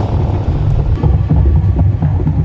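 Deep, throbbing low rumble from a horror episode's soundtrack: tense score mixed with irregular low knocking in the house, which the character puts down to leaky pipes.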